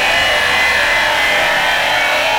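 Cartoon sound effect of harsh, continuous crunching and grinding as a character chews up a van.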